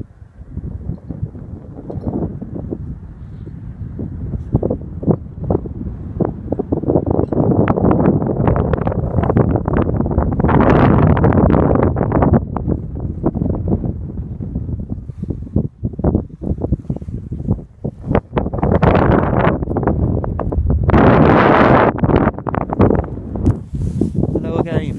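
Strong wind buffeting the camera's microphone: a heavy low rumble that rises and falls in gusts, the strongest about halfway through and again near the end.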